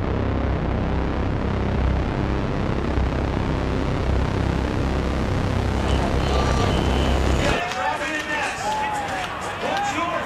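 Dense, rumbling title soundtrack with a steady low bass drone. It cuts off suddenly about three-quarters of the way in, and event broadcast audio follows, with a commentator talking.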